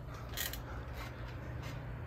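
Faint creaks and squeaks from trampoline springs and mat as wrestlers shift their weight on it, a few brief ones over a steady low rumble.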